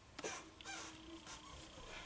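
A tarot card being handled and set down on a cloth-covered table: a few short, soft brushing and rustling sounds of card against fabric and other cards. A faint steady high whine starts about halfway through.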